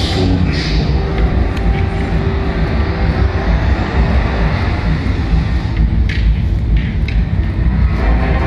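Ambient queue soundtrack of a darkride playing over speakers: a low, steady droning rumble with a few held tones, and a few short hisses about six and seven seconds in.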